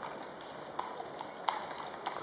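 Shod hooves of several walking cavalry horses clip-clopping on a tarmac road: uneven hoof strikes several times a second, one louder strike about one and a half seconds in.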